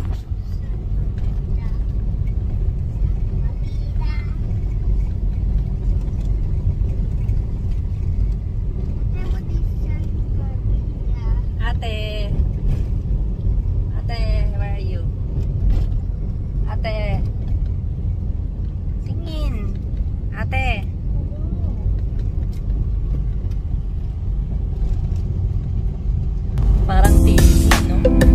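Steady low rumble of a car's engine and tyres heard inside the cabin, with short spoken remarks from passengers now and then. Music comes in about a second before the end.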